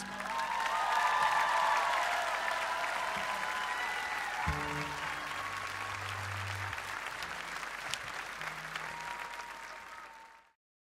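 Concert audience applauding and cheering at the end of a song, the applause slowly dying down.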